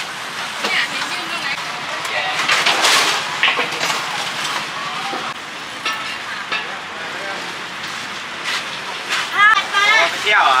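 Busy outdoor market ambience: people talking, a steady hiss of street noise and scattered knocks and clatter, with a voice close by near the end.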